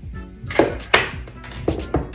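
About four sharp knocks, the loudest about a second in, as a blender cup full of smoothie is handled and set down on a counter, over steady background music.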